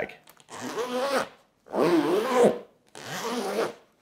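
The zipper on the main compartment of an Aer City Sling fanny pack is pulled open and shut three times. Each pull is a rasp of just under a second whose pitch rises and falls with the speed of the pull.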